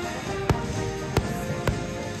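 Music playing, cut by three sharp bangs of aerial firework shells bursting: one about half a second in, then two more in quick succession.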